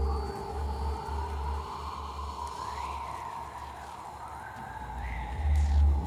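Live electronic music: a pulsing low bass that thins out midway and comes back near the end, under a held tone and slow sweeping pitch glides.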